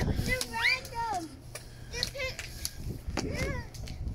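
Indistinct talking and high-pitched exclamations from children and adults, over a low steady rumble.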